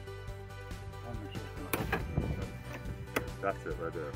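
Background music, with two sharp clicks, about two and three seconds in, as the Airstream trailer's entry door, its lock cylinder drilled out, is unlatched and swung open.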